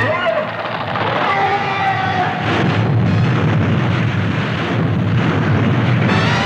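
Cartoon sound effect of a giant crumbling to pieces and crashing down: a long, continuous rumbling crash with a falling tone in the first second or so.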